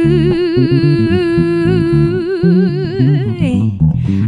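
A woman's voice holding one long wordless note with vibrato over a bass guitar playing a moving line underneath. The note breaks off near the end.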